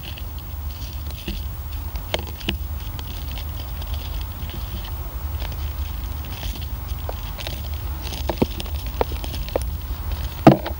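Crushed boilie crumbs being dropped and packed into a PVA bag by hand, giving scattered small crackles and clicks over a low steady rumble.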